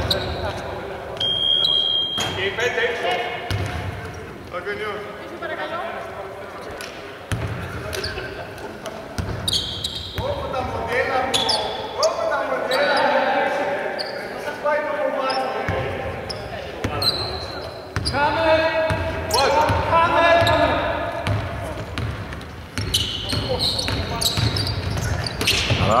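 Sounds of a basketball game echoing in a large, near-empty arena: players' voices calling out, a basketball bouncing on the hardwood court, and short high squeaks of sneakers. A short, high steady whistle sounds about a second in.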